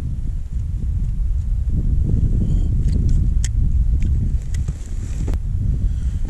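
Wind buffeting the microphone: a loud, uneven low rumble throughout, with a few faint clicks on top.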